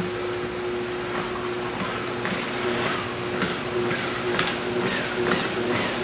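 Electric guitar played through a small amplifier: a steady held tone, with a run of knocks and scrapes from about two seconds in, roughly two a second, as the paintbrush fixed to the guitar's headstock strikes the canvas and the pickups carry the jolts.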